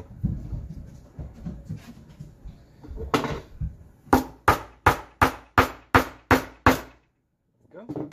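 Hammer blows on a metal rivet setter, peening over a medium brass rivet through leather: eight sharp strikes about three a second, each with a short metallic ring, after a few seconds of softer handling and knocking on the bench.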